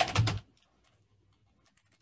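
Faint typing on a computer keyboard: a scattering of light key clicks that follows a man's voice trailing off in the first half-second.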